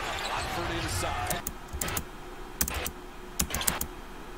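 Basketball game broadcast audio: a ball bouncing on a hardwood court, a series of sharp knocks, over faint voices.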